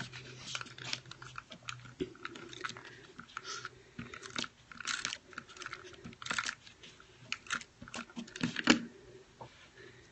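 Paper and card-making supplies being handled close to the microphone: irregular crinkles, rustles and small taps.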